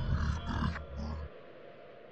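Deep, rumbling horror-film sound effect with a few harsher bursts on top, cutting off abruptly a little past a second in and leaving only a faint hiss.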